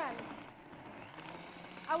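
Countertop blender running steadily, blending tomatoes and water into a raw soup; a low, steady motor hum shows clearly partway through.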